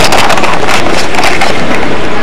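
Loud, distorted rushing and rustling of handling noise on a tiny body-worn camera's microphone as the camera is moved about.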